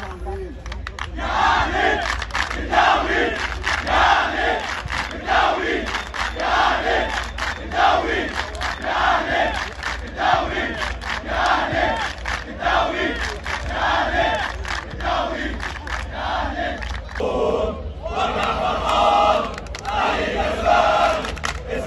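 A stadium crowd of football supporters chanting in unison, one short chant repeated over and over in a steady rhythm. Near the end it breaks off briefly and a new chant starts.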